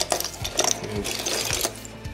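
Metal wristwatches and link bracelets clinking and rattling against each other as a hand rummages through a box full of them, a quick irregular run of small clicks.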